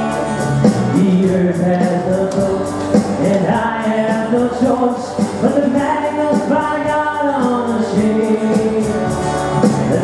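Live worship music: a small church band with acoustic guitar playing a hymn while voices sing.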